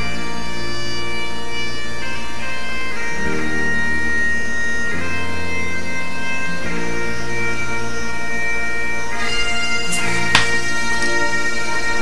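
Background bagpipe music: a steady drone under a slow melody whose held notes change every second or two.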